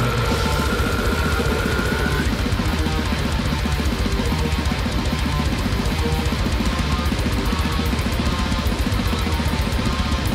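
Death metal recording playing: very fast drumming with double bass drum under heavy distorted guitars and bass, with a held high note over the first two seconds.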